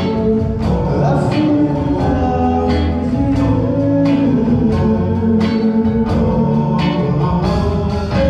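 A live band playing on stage, with a group of singers and drums, amplified in a theatre hall. The beat runs steadily throughout.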